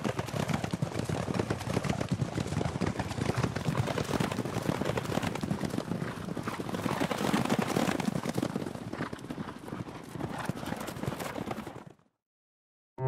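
Hooves of a field of racehorses galloping on a dirt track: a dense, continuous drumming of hoofbeats that cuts off near the end.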